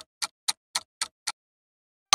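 Clock-tick sound effect of a quiz countdown timer, about four ticks a second, stopping a little past halfway through as the answer time runs out.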